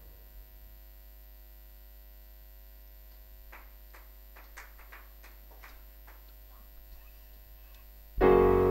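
Low, steady electrical mains hum in a quiet pause, with a scatter of faint short clicks and taps in the second half.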